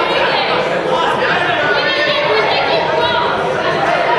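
Many people talking and calling out at once in a large sports hall: a steady chatter of overlapping voices from the people around the judo mat.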